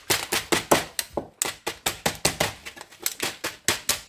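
Thin stainless-steel foil crackling and crinkling as a folded foil bag is creased and pressed shut by hand and with a plastic-faced mallet: quick, irregular, sharp crackles several times a second.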